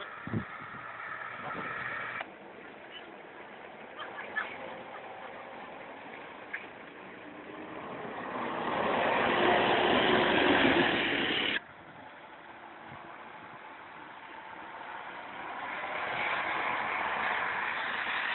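A diesel bus driving slowly past close by: its engine and tyres grow louder to a peak, then the sound cuts off suddenly partway through. Bus engine noise then builds again near the end.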